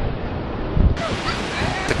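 Wind blowing on the microphone over the steady wash of ocean surf, and a man's voice starts right at the end.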